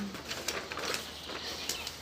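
Sheets of paper rustling faintly as a hand-written sign is picked up and raised, just after a hummed "hmm" trails off.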